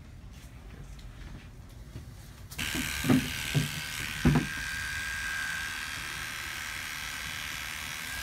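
Electric hair clippers start buzzing steadily about two and a half seconds in, clipping hair short at the back of a head. Three short knocks come in the first two seconds of the buzzing.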